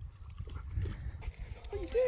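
A husky gives a short vocal 'talk' near the end, one sound falling in pitch, over a low outdoor rumble.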